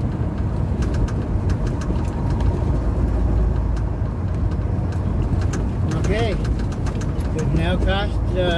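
Steady low rumble of a truck's engine and road noise heard inside the cab while driving at city speed. A man's voice comes in briefly about six seconds in and again at the very end.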